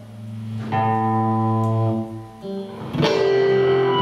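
Electric guitar ensemble holding sustained, overlapping chords over a low held note. A new chord comes in under a second in, the sound thins out about two seconds in, and a fresh, louder chord is struck about three seconds in.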